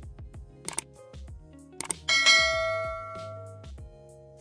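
Subscribe-button animation sound effects over soft background music: two short clicks, then a bright bell ding about two seconds in that rings and fades away over about a second and a half.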